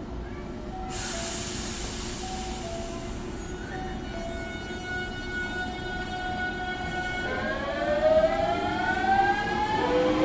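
Hankyu 8000 series electric train's Toshiba GTO-thyristor VVVF inverter starting up: a burst of air hiss about a second in, then a steady whine that breaks into a stack of rising tones about seven seconds in as the train pulls away and accelerates. A faint two-note tone alternates in the background through the first half.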